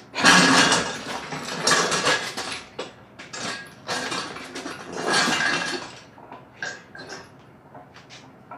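Honda K20 engine on a steel engine stand being rotated by hand: metal clattering and clanking from the stand's rotating head and the engine, in several loud bursts over about six seconds, then a few lighter clicks near the end.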